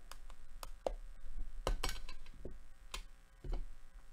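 Hard plastic card case handled with a small tool at its tape seal, then set down: a series of sharp clicks and taps, the loudest bunched together around the middle.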